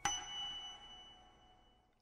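A single bell-like chime, struck once and ringing with a few clear tones that fade out over about a second and a half.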